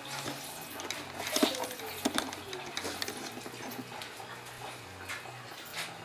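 Fresh cheese curd being squeezed by hand in a cloth to press out the whey, with soft wet handling sounds and a few short clicks and knocks against the bench and hoops.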